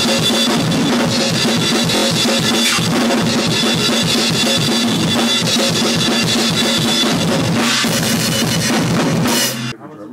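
Metalcore drumming on a full drum kit: fast, even double-kick bass drum strokes under snare hits and a constant wash of cymbals. It cuts off suddenly near the end.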